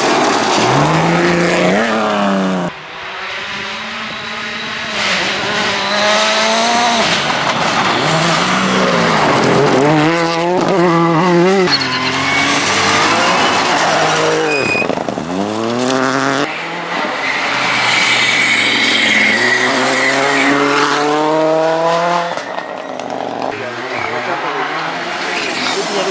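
Rally cars passing one after another at full throttle on a gravel stage, engines revving up and dropping back through gear changes, with gravel spraying. The cuts between cars make the engine sound change suddenly several times.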